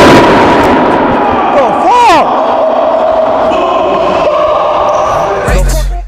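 The echo of an over-inflated basketball bursting dies away in a large gym hall at the start. People then shout and yell in reaction, with one long drawn-out yell. Music with a heavy beat comes in near the end.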